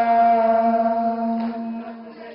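A man singing a noha, a mourning elegy, into a PA microphone, holding one long steady note that weakens near the end.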